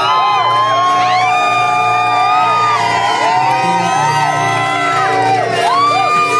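A live jazz band playing on, with held bass notes underneath, while several audience members whoop and cheer over the music.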